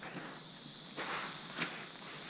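Coarse sand and gravel crunching close to the camera, with a longer scrape about a second in and a sharp tap just after one and a half seconds, over a steady high hiss.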